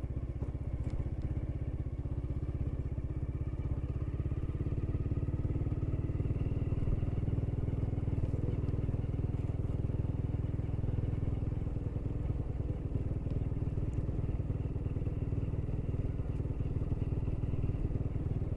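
Small motorcycle engine running steadily as the bike is ridden, a continuous low hum that gets slightly louder about six seconds in.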